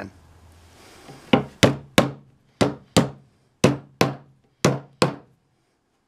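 Small hammer tapping metal tuner escutcheons into the drilled tuner holes of a wooden guitar headstock: nine sharp taps, mostly in quick pairs about a third of a second apart, each with a brief ring.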